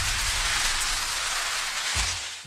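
An edited-in transition sound effect: a steady rushing hiss, like static or heavy rain, over a low rumble.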